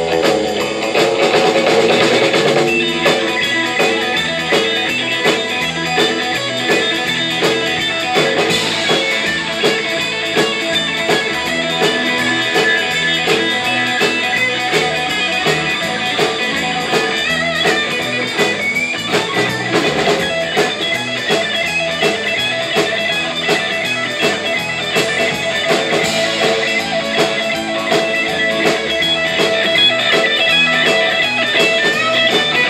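A live band playing instrumental rautalanka: electric guitars over a drum kit, with a steady beat.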